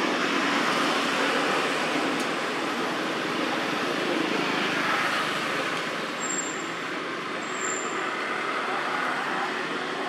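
Steady noise of road traffic, swelling and easing slowly as vehicles pass, with two brief high peeps partway through.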